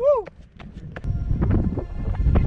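A man's wavering "woo" call gliding down in pitch and ending, followed by the quick thuds of running footsteps on hard dry ground. Background music comes in about a second in.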